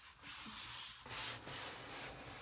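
Rubbing and rustling handling noise in two stretches, about a second and then about half a second long.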